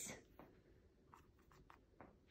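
Very faint scratching of a paintbrush dragging acrylic paint up and down across a stretched canvas: a few soft, short strokes in near silence.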